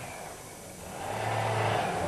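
A motor vehicle going by, its noise growing louder from about half a second in, with a steady low hum under it.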